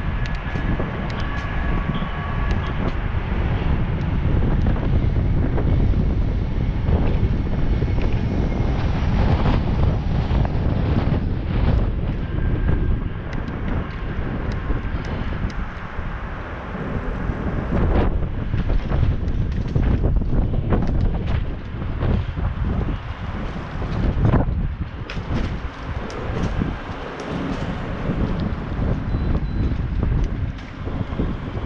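Low wind noise buffeting the microphone of a bicycle-mounted action camera while riding, with scattered short clicks and knocks, more of them in the second half.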